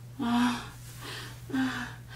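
A woman gasping and crying out "ah" in pain: two short voiced cries with breathy gasps between them.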